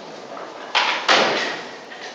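Hand loom being worked: two loud clattering knocks about a third of a second apart, a little under a second in, each dying away quickly.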